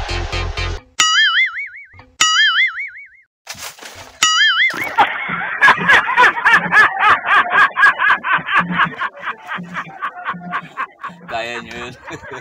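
Three cartoon 'boing' sound effects, each a springy tone with a wobbling pitch, about a second apart. From about five seconds in comes a fast rattling run of clicks, roughly six a second and lasting several seconds: the rapid-fire sound of a toy gun.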